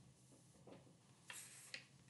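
Near silence with a few faint taps in the second half, as small toy animal figurines are picked up and set down on a desk.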